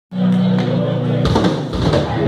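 Live metal band playing loudly through a club's amplification: a single held, droning guitar note, then the full band comes in with a dense, heavy wall of sound about a second in.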